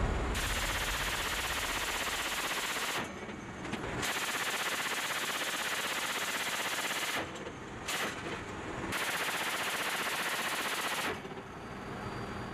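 Ramp-mounted machine gun aboard a V-22 Osprey firing four long bursts of rapid automatic fire, with short pauses between them and the last burst stopping a second before the end.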